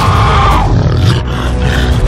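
Sound-designed giant monster roar from the kaiju Leatherback, tailing off about half a second in, over film score and a heavy deep rumble.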